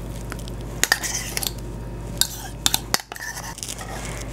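A metal spoon scraping and tapping against mixing bowls as a sauce mixture is scraped out onto ground beef in a stainless steel bowl: a few light, separate clinks over a low steady hum.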